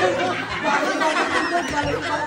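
Group chatter: several young people talking over one another, with laughter mixed in.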